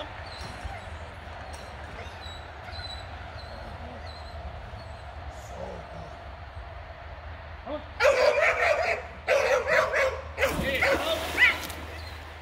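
A dog barking and yipping in a run of loud, choppy bursts starting about eight seconds in, excited around a dock jump into the pool.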